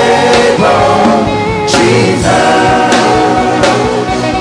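Gospel worship music: voices singing long, held lines over a band with a steady beat.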